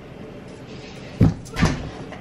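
Two dull knocks about half a second apart, a little over a second in: something knocking against furniture or the lighting setup.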